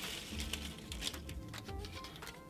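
Small paper slips rustling and clicking irregularly as a hand shuffles through a pile of them, over background music with steady low notes.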